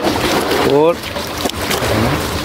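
Steady running of a motor-driven water pump used to drain the puddle, with a short rising vocal call about halfway through.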